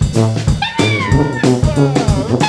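Instrumental jazz: a saxophone slides up and down in pitch, bending its notes, over a busy drum kit and bass.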